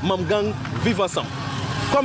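Talking voices over street noise, with a motor vehicle's engine running.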